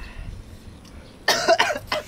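A person coughing in a quick run of several harsh coughs, starting about a second and a quarter in. The coughing comes while eating very spicy noodles.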